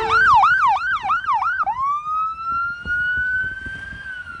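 Ambulance electronic siren on a fast yelp, about four sweeps a second. Less than two seconds in it switches to a slow wail, rising and holding high, then starting to fall at the end. A steady horn blast carries over and stops just after the start.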